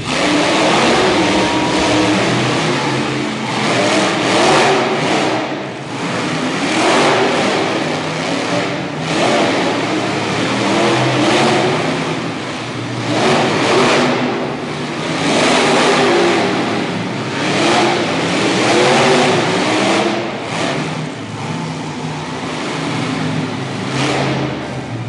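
Monster truck engines revving hard in repeated surges, the pitch climbing and dropping every two to three seconds as the trucks accelerate and back off.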